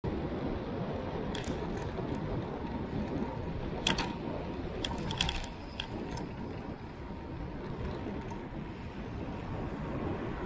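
Riding noise picked up by a bicycle-mounted camera: a steady rumble of wind and tyres, broken by a few short clicks and rattles from the bike.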